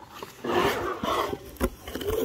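A rough, roar-like animal sound lasting under a second, played back by an Alilo talking pen, followed by a single sharp click.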